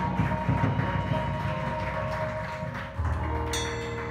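A drum kit played over a pop song backing track: quick, dense strokes on the snare and toms for about three seconds, then the pattern changes to held tones with a cymbal crash about three and a half seconds in.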